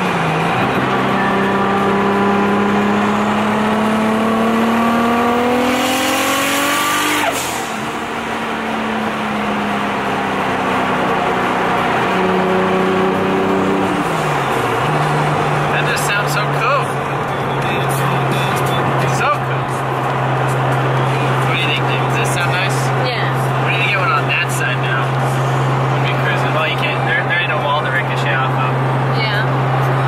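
Single-turbo 2JZ-GTE straight-six of a MKIV Toyota Supra, heard from inside the cabin, pulling up through a gear with its note climbing steadily for about seven seconds. A loud hiss comes at the top of the pull, then the note drops sharply at the shift. After a couple of pitch changes the engine settles into a steady low cruising drone for the second half.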